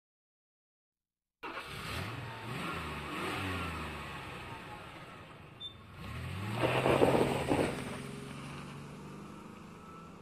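A vehicle engine revving, starting suddenly about a second and a half in, its pitch rising and falling several times, with a louder burst of noise around the middle before it settles and fades out.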